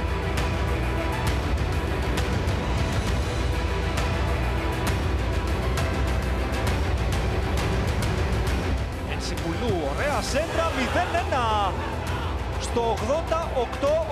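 Background music with a steady beat under a match highlights montage. A voice comes in over the music in the last few seconds.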